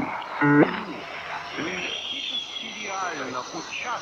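A faint voice, broken by short gaps, with a thin steady high hiss from an old radio tape recording underneath.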